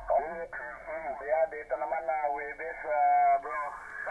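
Spanish speech coming in on a small mcHF-clone HF transceiver tuned to the 40-metre band, heard from the radio's speaker. The voice talks on without a break and sounds thin and narrow, with nothing of the upper frequencies.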